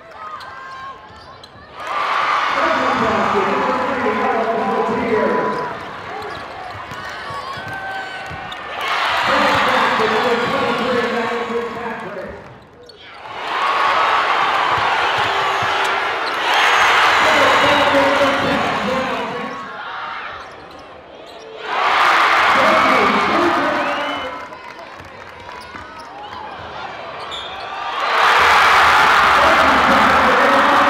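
Arena basketball game sound: a crowd's voices and cheering rising and falling in several swells, loudest near the end, with a basketball bouncing on the hardwood court.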